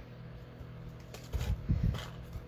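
Hands handling red ribbon and a paper tag on a craft table: faint rustling, then a short run of soft low bumps and small clicks in the second half, over a steady low hum.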